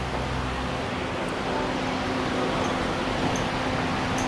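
Electric fan running beside a charcoal grill: a steady whir with a low hum, a bit noisy.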